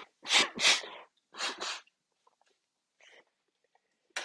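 A person blowing their nose in several sharp nasal blasts, grouped in pairs within the first two seconds, clearing sinus drainage that bastrika pranayama has loosened from water left by a jala neti nose wash.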